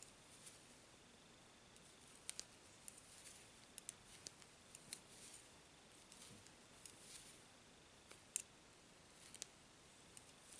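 Metal knitting needles clicking faintly and irregularly against each other as stitches are worked, a few sharp clicks every second or so over very quiet room tone, with one louder click about eight seconds in.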